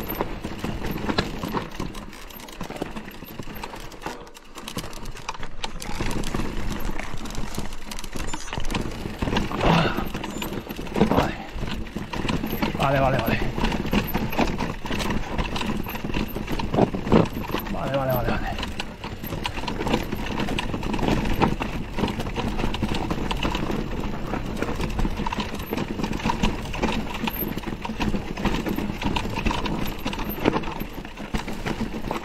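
Mountain bike clattering and rattling over rock and loose stones on a steep descent: tyres knocking on rock steps, with chain and suspension rattle in irregular, rapid knocks.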